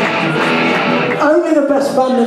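Amplified electric guitar being strummed on stage, with voices and crowd noise beneath. A little after a second in, clearer held notes ring out.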